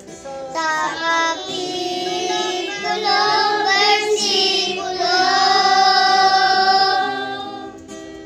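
A group of young children singing a Tagalog gospel song together, ending on a long held note that fades out near the end.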